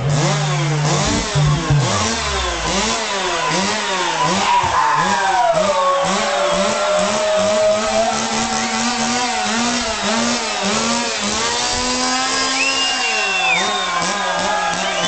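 Keytar synthesizer played to imitate a revving chainsaw: a buzzing engine-like tone whose pitch swoops up and down about twice a second, with a long falling glide about halfway through.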